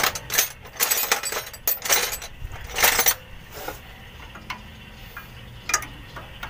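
Steel hand wrenches clinking against metal air-line fittings as they are worked loose. A quick run of sharp metallic clinks fills the first three seconds, then it goes quieter, with one more clink near the end.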